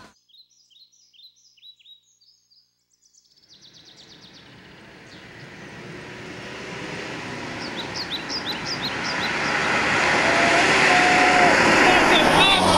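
Birds chirping, at first alone. From about three and a half seconds in, a car approaches along the road, its engine and tyre noise growing steadily louder while birds go on chirping.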